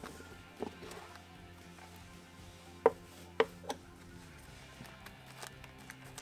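Black plastic microphone carrying case being opened: sharp clicks as its latches snap open, the two loudest about three seconds in, then softer handling taps of the lid, over quiet background music.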